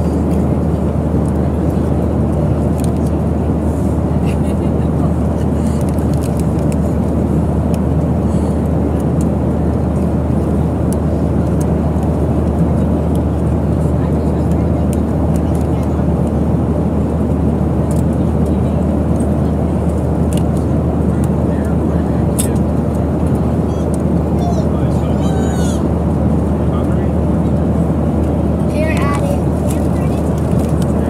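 Steady airliner cabin noise from the engines and the air rushing past: an even low rumble with a hum underneath that does not change. A few faint ticks and murmurs sit on top of it.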